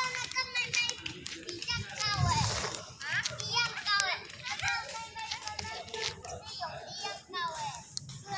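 Several children's voices chattering and calling out at play, high-pitched and overlapping.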